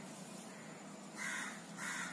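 Two short, faint crow caws about half a second apart, over quiet room tone.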